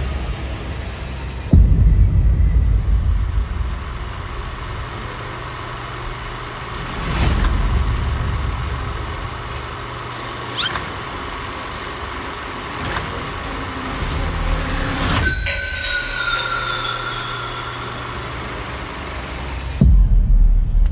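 Horror-trailer sound design: a low rumbling drone broken by three heavy hits, about a second and a half in, around seven seconds in and around fifteen seconds in, the first the loudest. A falling high tone trails off after the last hit.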